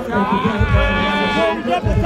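A man's long, drawn-out shout into a microphone, held on one pitch for about a second and a half, over a hip-hop beat at a live rap show.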